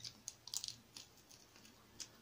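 Faint mouth sounds of a person chewing food, with a quick run of short wet clicks and smacks about half a second in and a few more after.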